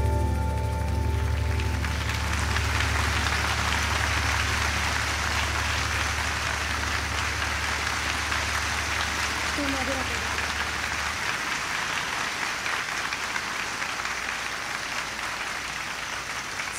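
Concert audience applauding steadily as a song ends, over the last low held note from the stage, which cuts off about eleven seconds in.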